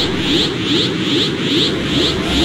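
Anime power-up aura sound effect: a steady pulsing energy hum, about three pulses a second, each with a short hiss and a small rising whoosh.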